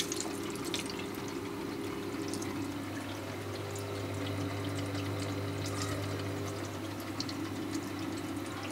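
Freshwater aquarium sump running quietly: water trickling through the filter chambers with the odd little gurgle and drip, over a steady low hum from the CO2 reactor's pump.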